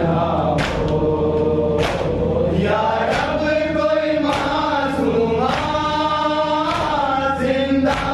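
Men chanting a Shia noha (Urdu mourning lament) together, led by one reciter, with sharp rhythmic chest-beating (matam) strikes about once every 1.2 seconds keeping the beat.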